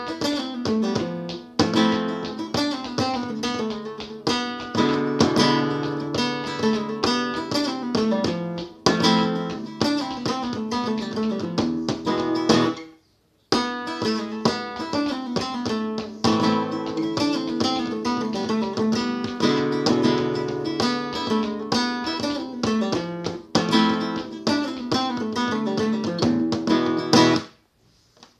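Cutaway acoustic guitar playing the opening of a newly composed flamenco melody, a dense run of plucked notes and chords. The playing cuts off abruptly just before the halfway point for under a second, then picks up again, and stops shortly before the end.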